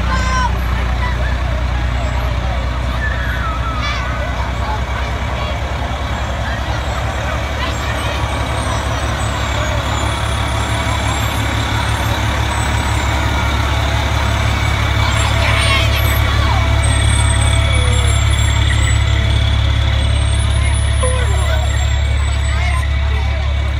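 Fire engines' diesel engines running as they roll slowly past close by, a steady low rumble that swells a little in the second half.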